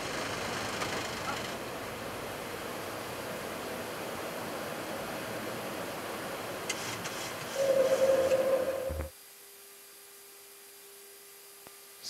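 Steady rush of airflow and engine noise in a Boeing 737-800 cockpit during the climb just after takeoff, with a louder hum rising about seven and a half seconds in. At about nine seconds the noise cuts off abruptly, leaving a faint steady tone.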